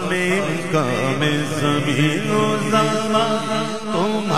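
Devotional naat singing: male voices chanting a wavering, melismatic melody over a steady held low note.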